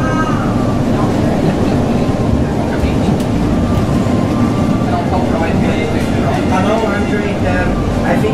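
Inside an REM electric light-metro train running along its track: a steady rumble of wheels and motors. People's voices talk over it at the very start and again from about five seconds in.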